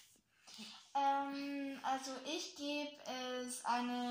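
A girl singing a run of long held notes with no instrument beneath, starting about a second in.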